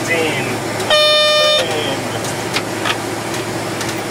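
A single steady electronic tone sounds in the cockpit about a second in, lasting about two-thirds of a second. Behind it runs steady airliner cockpit noise with a low hum and faint bits of voice.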